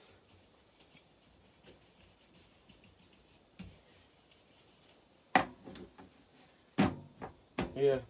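Faint, soft rubbing and pressing of hands flattening bread dough on a galley countertop. Near the end, two brief louder sounds about a second and a half apart, the second with a man's voice.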